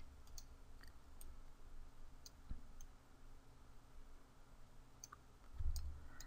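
A few faint, scattered computer mouse clicks over a low steady hum.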